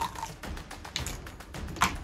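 A marble running down a plastic K'NEX marble run: a quick, uneven series of light clicks and clatters as it rolls along the track pieces, with a sharper click near the end. The path is running cleanly, its accordion tube re-angled to feed the marble correctly.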